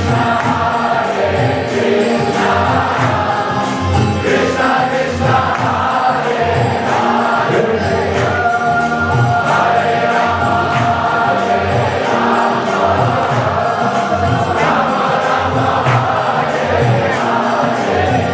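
Group kirtan: a crowd of voices chanting a mantra together in call-and-response style over a steady beat of hand cymbals (kartals) and drums.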